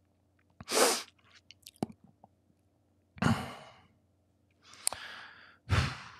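A man breathing out and sighing close to a microphone, about four short breaths over a few seconds, with a few small clicks between them.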